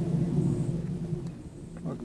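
Hands working an XT60 battery plug into its socket: a low rumbling handling noise close to the microphone that fades after about a second, with a few faint clicks.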